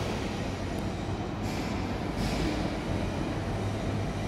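Steady low mechanical hum and rumble, like background machinery running, with a couple of faint brief swishes.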